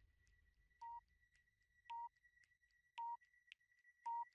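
Faint electronic countdown-timer sound: a short beep about once a second, three times, with light ticks between the beeps and a thin steady high tone underneath.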